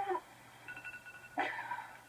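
A young woman's sleepy, whining groans, one at the start and another about one and a half seconds in, with a phone's steady electronic beep between them.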